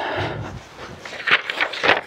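Footsteps and rustling as a person reaches the pulpit and handles paper notes, with a few short scuffs and rustles near the end.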